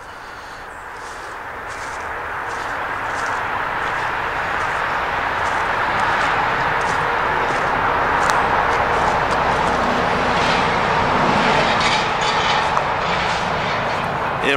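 Highway traffic noise: a steady rush of tyres and engines that swells over the first five or six seconds and then holds loud.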